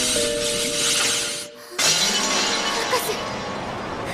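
Dramatic sound effects over music: a loud hissing crackle, a short dip, then just under two seconds in a sudden crash of shattering glass that dies away.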